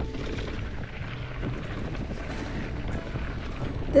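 Mountain bike riding heard from a camera on the rider: a steady rumble of wind on the microphone with the tyres rolling over a leaf-covered dirt trail.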